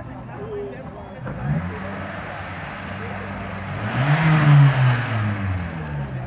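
A car engine being revved twice: a short light rise in pitch about a second in, then a louder rev near the middle that climbs and falls away before the end.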